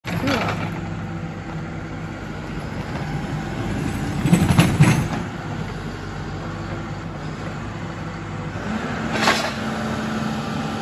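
Backhoe loader's diesel engine running steadily, rising louder for about a second around the middle, with no hammering from its impact hammer.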